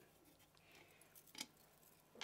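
Near silence: room tone, with one faint brief tick about one and a half seconds in.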